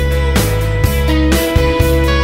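Rock band playing an instrumental stretch with no vocals: a held lead guitar note over bass and drums hitting about twice a second.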